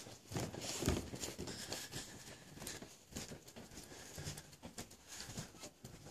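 Footsteps walking across a room, faint soft steps about one every half to one second.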